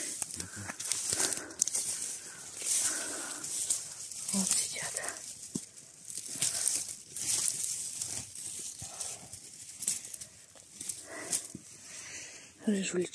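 Dry grass and stems rustling and crackling close to the microphone, with small irregular snaps and scrapes as a knife cuts a saffron milk cap mushroom out at its base.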